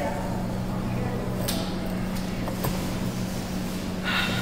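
Claw machine running with a steady electric hum, and a few faint clicks as the claw works over the plush toys.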